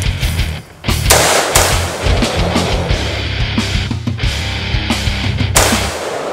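Rapid rifle gunfire from an AR-15-style rifle mixed with loud music. It starts about a second in and cuts off suddenly just before the end.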